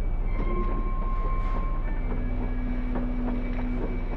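Steady low mechanical rumble with a fast, even throb underneath. A held high tone sounds through the first half, and a lower held tone comes in about halfway and holds on.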